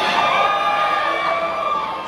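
Audience shouting and cheering, many voices calling out together at once.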